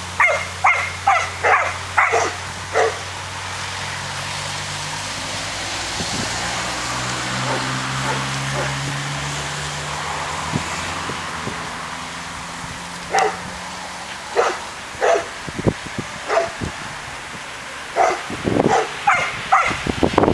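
Entlebucher Mountain Dog barking in short sharp barks: about six in the first three seconds, then a pause filled by a low steady hum, and a scattered run of barks again in the last seven seconds.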